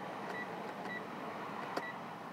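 Three short, high electronic beeps from a Mitsubishi ASX's instrument cluster as its trip-computer button is pressed, with a small click near the end, over a steady background hiss.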